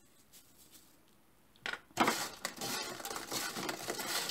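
Faint ticks of salt sprinkled onto freshly fried chips, then from about two seconds in a hand tossing the chips in a perforated aluminium strainer, the fries rustling and scraping against the metal.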